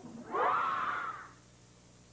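A breathy, voice-like whoosh about a second long, rising and then falling in pitch, followed by quiet with a steady low electrical hum.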